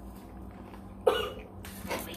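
A person coughs: a sharp cough about a second in, then a second, softer one near the end.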